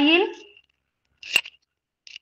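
A woman's voice trailing off at the start, then after a short pause a single sharp click about a second and a half in: a pen tapping against the interactive whiteboard's screen as she reaches to mark an answer.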